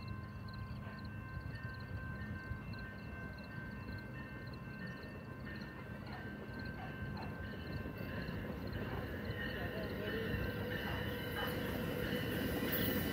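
A distant railroad crossing bell ringing in a steady, rapid rhythm, with an approaching passenger train's rumble growing slowly louder toward the end.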